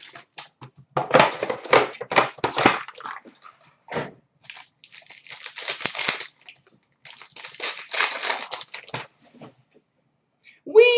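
Clear plastic wrapping crinkling and tearing in the hands as a card box is unwrapped, in three bursts of a second or two each, with a short click between the first two.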